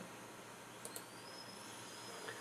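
Quiet room tone with one faint click just under a second in, followed by a faint thin high-pitched whine.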